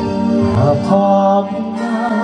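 Live band music: a man sings a Thai-language song into a microphone over electric guitar and bass guitar, holding and bending his notes.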